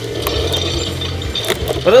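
Plastic finger joints of a Marvel Legends Infinity Gauntlet toy ratcheting as the fingers are bent closed, with a few sharp clicks. The gauntlet's fingers cannot snap.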